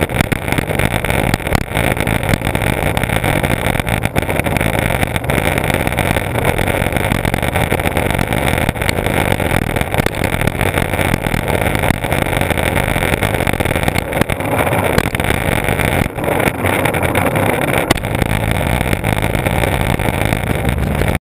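Skateboard wheels rolling on asphalt, a steady loud rumble heard through a board-mounted action camera, with wind on the microphone and faint clicks over bumps in the road.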